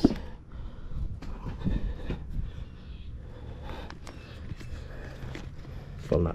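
Handling noise from a motorcycle boot being gripped and turned over in the hand: a few light knocks and rubs over a steady low rumble.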